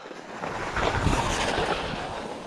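Skis sliding and scraping over packed snow, with wind rushing over the microphone; the hiss grows louder about half a second in as the skier turns and picks up speed.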